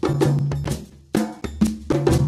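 Percussion-driven TV station intro music: sharp drum and percussion hits over sustained bass notes in a steady rhythm.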